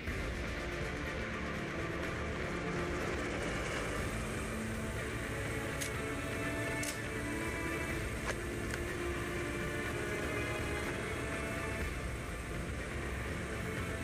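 Film soundtrack music from a movie clip, played over an auditorium's speakers: a steady bed of held tones with no dialogue, and a few faint ticks about six to eight seconds in.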